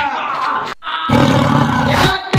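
A loud roar, broken by a brief silence just before halfway, then louder and deeper in the second half.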